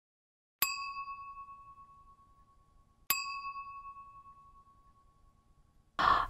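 Two bell-like dings about two and a half seconds apart, each a clear high tone that rings out and fades over about two seconds: an edited-in chime sound effect.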